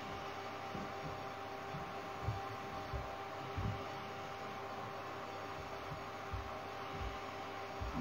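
Quiet room tone: a steady electrical hum with two faint constant tones over a soft hiss, broken by a few soft low bumps.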